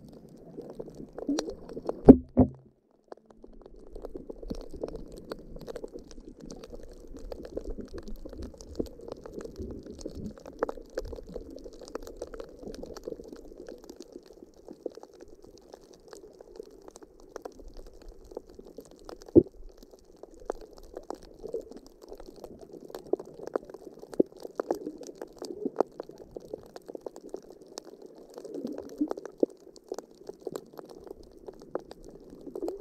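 Muffled underwater sound picked up by a camera in its housing: a steady low murmur of water with many faint scattered crackling clicks. A sharp knock, the loudest sound, comes about two seconds in, and another about nineteen seconds in.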